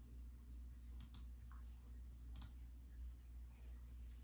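Faint computer mouse button clicks: two quick clicks about a second in and a single one over a second later, over a low steady hum.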